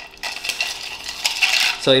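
Long bar spoon stirring ice in a stainless-steel mixing tin: a fast, irregular run of light clinks of ice and spoon against the metal, as the old fashioned is stirred to chill and dilute it.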